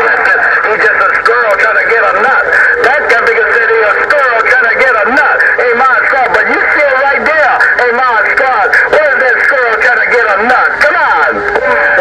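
Uniden HR2510 ten-metre transceiver's speaker receiving several distant single-sideband voices at once on the 27.085 MHz CB band: thin, garbled and overlapping through a steady hiss.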